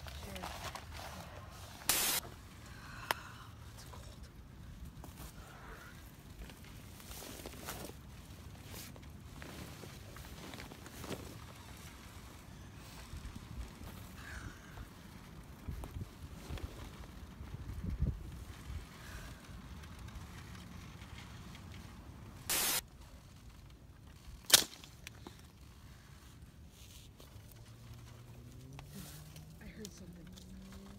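Quiet night ambience with a faint low rumble, broken by a few short, sharp noises, about two seconds in, just past twenty-two seconds, and the loudest, a single sharp crack, about twenty-four seconds in.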